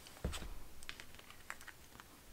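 Light clicks and taps of tarot cards being handled and picked up by hand: one sharper tap about a quarter second in, then a scatter of small, quiet clicks.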